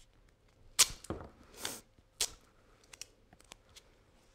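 Duct tape being pulled off its roll and torn by hand: a sharp rip about a second in, a longer pull of tape off the roll, and another short rip a little after two seconds.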